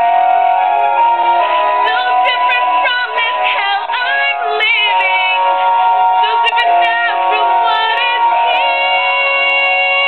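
A woman singing solo, holding long notes with wavering, ornamented runs in the middle.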